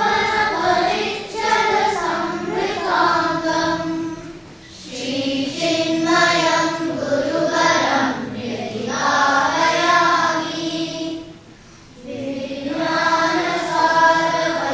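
A group of children chanting Sanskrit slokas in unison to a sung melody, in long phrases with two short breath pauses, about four and a half and eleven and a half seconds in.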